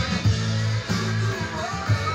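Electric guitar, Stratocaster style, played without singing: strummed chords over held low notes that change about every half second, with sharp strokes at the start and near the end.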